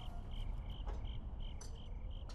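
Crickets chirping in a steady, even rhythm of about three short chirps a second, over a faint low rumble.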